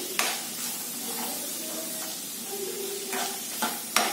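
Sliced onion, dried red chillies and cashews sizzling steadily in hot oil in a nonstick pan, being fried until golden brown, while a steel spoon stirs them and scrapes the pan a few times, briefly near the start and in the last second.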